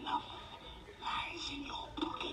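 Indistinct, whispery speech: a voice without clear words, coming and going in short phrases.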